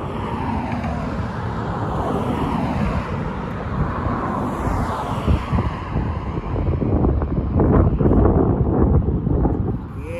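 Wind buffeting the microphone of a phone carried on a moving bicycle, with road traffic passing; the rumble grows louder over the last few seconds.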